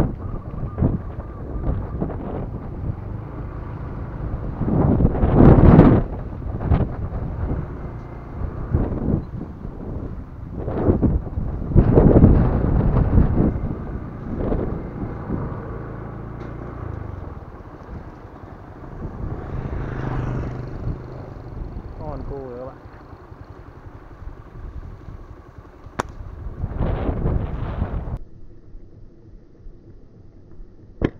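Wind buffeting the microphone of a moving camera: a rumbling noise that surges loudly three times, with a faint low hum underneath.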